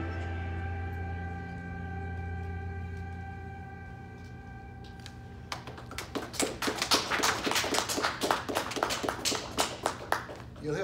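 The last held chord of a recorded song from his album, played from a laptop, fades out. About five and a half seconds in, a small audience starts clapping and keeps on to the end.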